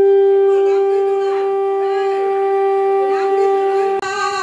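Conch shell (shankha) blown in one long, steady blast held at a single pitch, ending sharply after about four seconds, with faint voices behind it.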